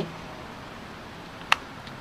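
A pause in the talk with a faint, steady background hiss, broken by one sharp, short click about one and a half seconds in.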